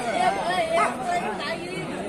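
Voices talking and calling over one another, with crowd chatter behind.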